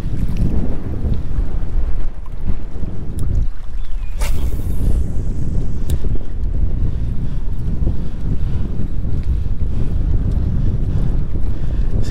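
Strong wind buffeting the microphone in a steady low rumble, over choppy open water. Two brief sharp clicks about four and six seconds in.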